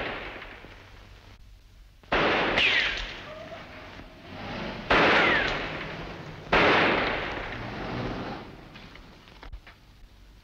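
Three gunshots about two, five and six and a half seconds in, each echoing as it dies away. The first two are followed by a falling ricochet whine.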